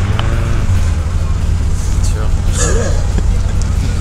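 Steady low drone of an engine running, with faint voices over it.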